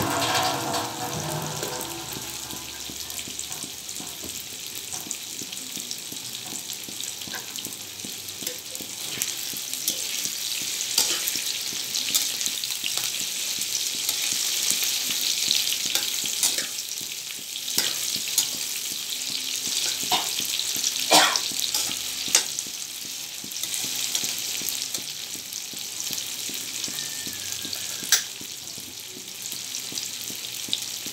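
Tofu cubes frying in hot oil in a wok: a steady sizzle with scattered pops. There are occasional clicks and scrapes as a spatula turns the pieces.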